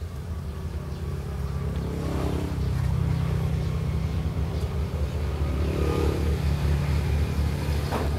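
A motor engine running steadily with a low hum. It grows louder over the first few seconds, then holds.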